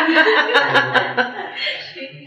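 A woman chuckling and laughing, with a run of light, evenly spaced clicks in the first part.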